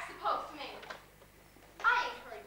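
Actors' voices speaking stage dialogue, picked up from a distance on a camcorder, with a lull about halfway through and a loud, sharp utterance near the end.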